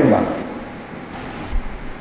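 A man's voice over a microphone trails off at the end of a word, followed by a pause of about a second and a half filled only with faint low room noise.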